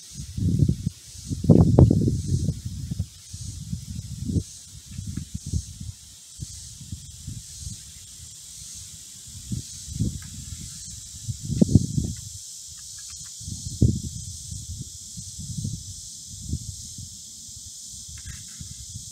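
Irregular low gusts of wind rumbling on the microphone, loudest early on and again near the middle, over a steady high-pitched insect chorus that pulses at first and then holds steady.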